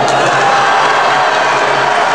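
Crowd of spectators in a large sports hall cheering and shouting steadily as a martial-arts bout goes on.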